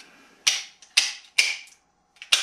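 9mm cartridges pressed one at a time into a pistol magazine: three sharp metallic clicks about half a second apart as each round snaps in under the follower spring.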